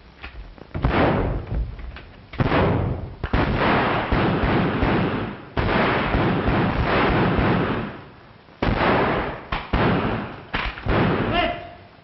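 Bursts of gunfire on an old film soundtrack: about seven loud volleys, each starting sharply and lasting a second or two, with short lulls between them.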